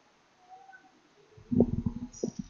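Computer keyboard typing: after near quiet, a quick run of key clicks starts about one and a half seconds in.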